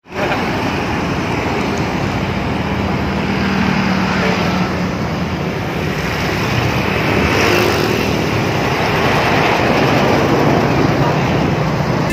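Road traffic passing close by: motorcycles and trucks running past under a loud, steady rush of noise.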